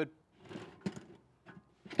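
Short metallic scrape and a couple of light clicks as a portable stainless steel propane griddle is worked loose and lifted off its mounting bars.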